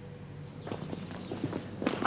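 Footsteps of shoes on a tiled floor: a run of irregular steps starting a little under a second in and growing louder toward the end.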